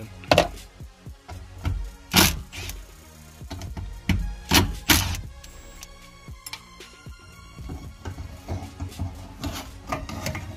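Cordless Milwaukee M12 driver spinning the nuts off a fuel pump hanger flange in several short bursts during the first half, over background music.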